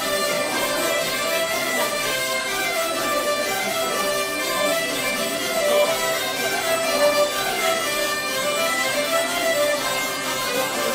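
A live folk band playing traditional French dance music, with a fiddle carrying the tune over a steady dance beat.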